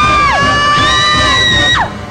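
A few high children's voices cheering a long held 'yay', overlapping, each sliding up at the start and dropping away at the end.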